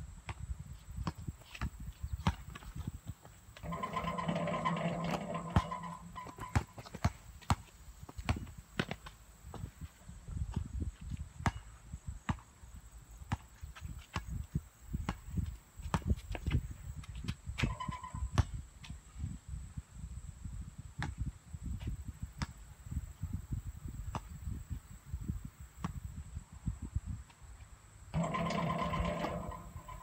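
A basketball bouncing and being dribbled on an outdoor asphalt court, a run of irregular sharp thuds, with a low wind rumble on the microphone. Twice, about four seconds in and again near the end, a steady pitched sound of about two seconds rises over the bouncing.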